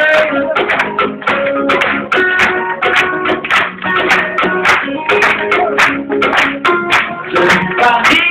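Live band playing an instrumental passage of an acoustic set: plucked acoustic guitar notes over frequent sharp percussion strikes.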